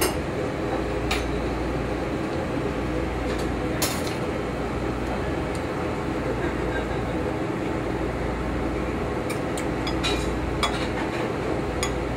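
Restaurant kitchen background: a steady low hum of kitchen equipment, with a few short clinks of dishes and utensils, several of them near the end.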